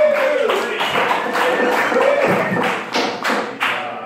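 Small audience applauding, many separate claps with a shout or two, dying down near the end.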